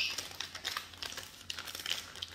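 Plastic wrapper of a Reese's Peanut Butter Cups pack crinkling in the hands as it is pulled open: a run of small, irregular crackles.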